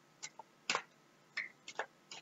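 Faint, irregular light clicks and flicks of tarot cards being shuffled in the hands, about six in two seconds, the loudest a little before one second in.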